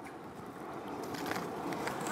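Quiet, steady outdoor background noise with a few faint light ticks about halfway through.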